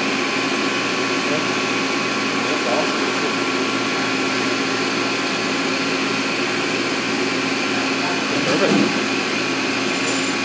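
CNC vertical milling machine running steadily while milling titanium: a constant hum with a few steady whining tones.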